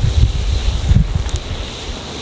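Wind buffeting the microphone: irregular low rumbling gusts.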